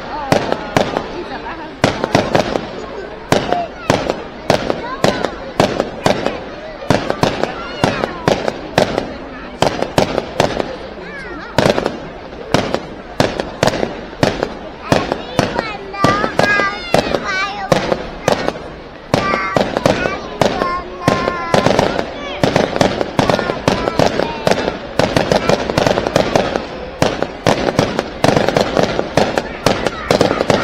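Aerial fireworks display: a rapid, continuous run of bangs and crackles from shells bursting overhead, several a second, with crowd voices underneath.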